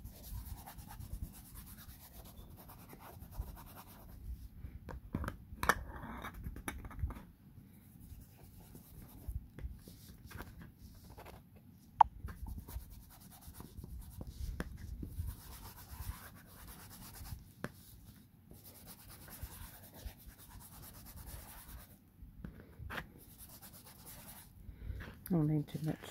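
Old book pages being rubbed and handled on a work mat while ink is dabbed onto them with a small applicator: soft, irregular paper rustling and scraping, with a few light clicks and one sharp tap about twelve seconds in.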